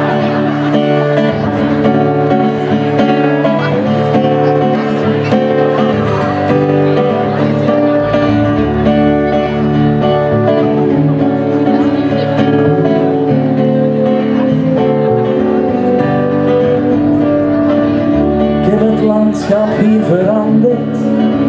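Live band playing the instrumental intro of a folk-pop song, with acoustic guitar, keyboard and bass, steady and without vocals.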